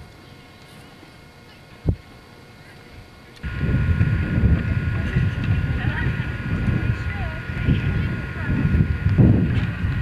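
Faint steady hiss broken by two sharp clicks, then about three and a half seconds in a sudden change to loud outdoor sound: wind rumbling on the microphone and voices of a group walking past with wooden handcarts.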